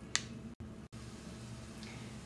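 Faint, steady sizzle of onions, mushrooms and bacon crumbles sautéing in a cast iron skillet, with one sharp click just after the start.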